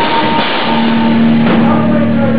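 Live rock band playing loudly, with a drum kit and amplified instruments. There are only a couple of sharp drum hits, and a held low note comes in about a third of the way through and rings on.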